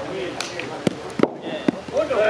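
Three sharp knocks about a second apart, the middle one loudest, from a thrown bolos ball striking the dirt court and pins, over crowd chatter.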